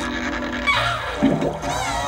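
Cartoon soundtrack: background music with watery sound effects, including a falling glide about a second in and curving whistle-like tones near the end.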